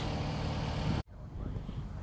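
Steady outdoor background noise with a low hum. The sound cuts out abruptly about a second in, then fades back up.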